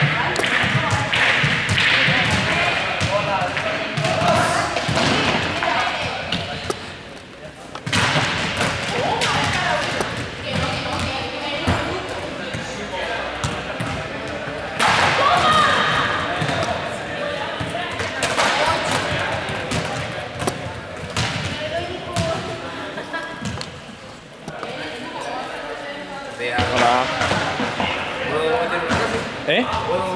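Footballs thudding and bouncing on a sports-hall floor as they are kicked, amid many overlapping voices in a large hall.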